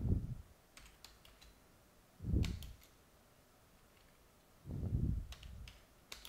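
Typing on a computer keyboard in short bursts of a few keystrokes. Three dull low thumps, the loudest sounds, come about two and a half seconds apart.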